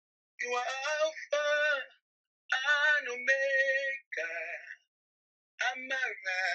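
A solo voice singing unaccompanied in drawn-out phrases with vibrato, in about five short phrases. Between phrases the sound drops to dead silence, as on an online call's line.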